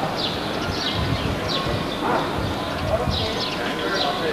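Outdoor background of many people's voices murmuring, with a run of short high chirps that sweep downward, several each second.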